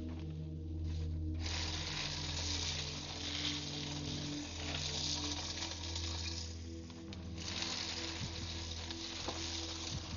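An office paper shredder feeding and cutting sheets of paper: a steady rasping hiss that starts just over a second in, stops briefly about two-thirds of the way through, then runs again. A low steady hum lies underneath.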